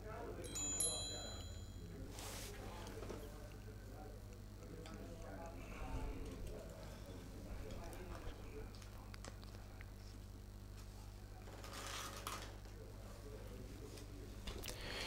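Billiard balls on a carom table give a brief ringing click about a second in and a short knock a little later. Beneath them lie a low steady hum and faint murmuring voices.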